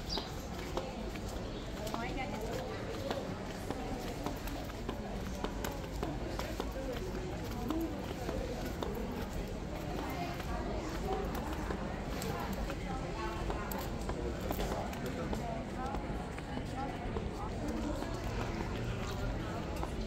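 Crowd of visitors talking in many overlapping voices, with scattered footsteps on stone paving.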